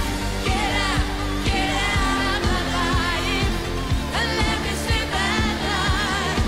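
A live pop-rock band playing with a woman singing the lead melody, over a steady drum beat and bass.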